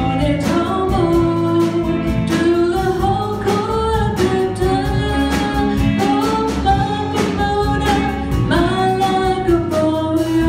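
Live band music with a young girl singing the melody into a microphone, holding and sliding between notes, backed by a drum kit and guitars.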